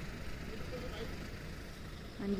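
Steady low outdoor background rumble, with a faint brief tone about half a second in.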